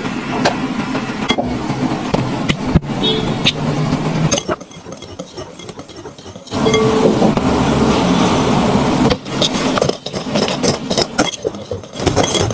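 Crushed biscuit crumbs scraped and pressed with a silicone spatula, with many small clicks and scrapes. About six and a half seconds in, an electric hand mixer starts beating the cream cheese mixture in a glass bowl, running steadily for a few seconds before stopping. A wire whisk then swishes and clinks against the glass bowl.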